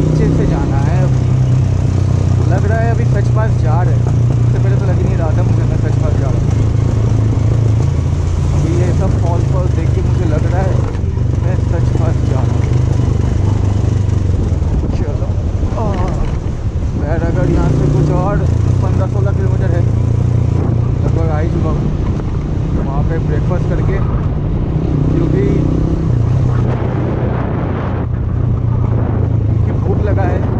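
Motorcycle engine running steadily under way on a riding road, its pitch and level shifting a few times. A voice comes and goes over it in short patches.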